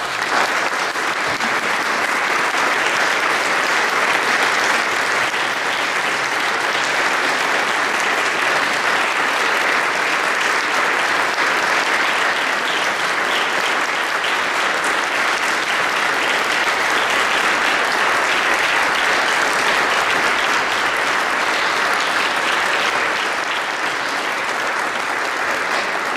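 Audience applauding, breaking out suddenly as the music ends and continuing steadily, easing slightly near the end.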